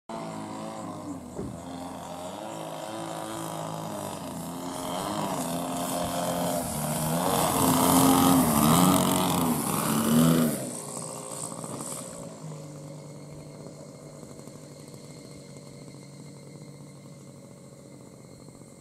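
Engine of a radio-controlled Fokker D.VII biplane model, its note wavering as it grows louder while the plane flies in low and close. It drops away suddenly about ten seconds in, then runs on quietly at a low, steady pitch as the model rolls along the runway after landing.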